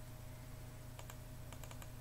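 Faint typing on a computer keyboard: scattered light key clicks as a short word is typed, over a faint steady hum.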